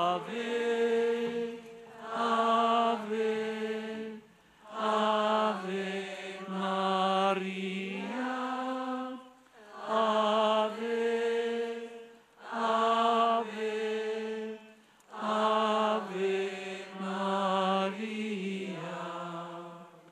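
Voices singing an Italian hymn to the Virgin Mary in slow phrases of held notes, with short breath pauses between the lines.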